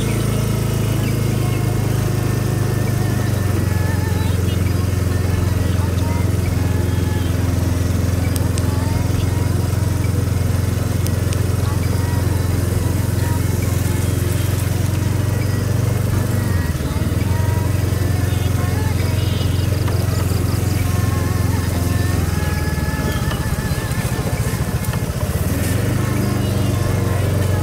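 Small motorcycle engine running steadily with a loud, even low hum, as heard from on the moving bike. Its pitch dips and recovers twice, about two-thirds of the way in and again a few seconds later.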